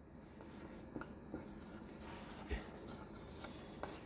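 Faint squeak and scratch of a marker pen writing a word on a whiteboard, with a few light taps as the strokes start and stop.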